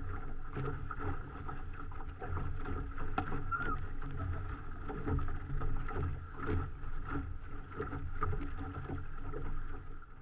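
Water rushing and slapping against the hull of an RS400 sailing dinghy under way, heard from a camera mounted on the boat, with irregular knocks and a low rumble of wind on the microphone.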